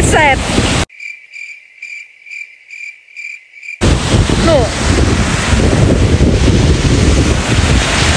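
Wind on the microphone and surf on a beach, abruptly replaced after about a second by about three seconds of cricket chirping, about two chirps a second, with nothing else under it: a cricket sound effect edited in over muted audio. The wind and surf noise then cuts back in.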